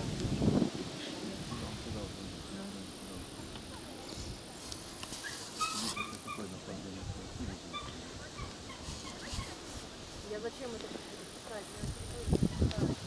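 Faint, indistinct voices of a few people over a low, uneven rumble of wind on the microphone, with a few short high chirps about six seconds in.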